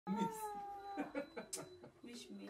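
A high-pitched human voice holding one long call that sinks slightly in pitch for about a second, then breaking into short spoken syllables with hissing "s" sounds.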